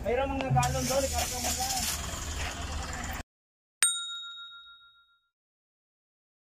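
Outdoor background with a few words of talk cuts off abruptly about three seconds in. Just after, a single bright ding, a bell-like end-screen sound effect, rings out and fades over about a second and a half.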